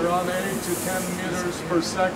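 Steady rush of air from a wind tunnel running at an estimated 8 to 10 metres per second, under people's voices talking.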